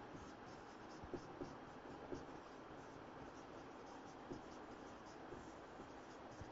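Faint scratching and tapping of a marker pen writing on a whiteboard, in short irregular strokes.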